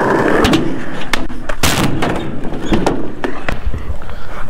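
Skateboard wheels rolling over rough asphalt, with a string of clicks and knocks from the board and one loud slap of the board hitting the ground a little under two seconds in.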